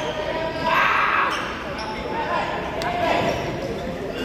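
Futsal ball being kicked and bouncing on an indoor court, a few sharp knocks, with players' voices and a shout about a second in, echoing in a large hall.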